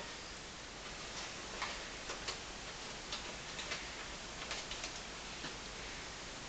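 Faint, irregularly spaced light clicks and taps, about a dozen, over a steady background hiss.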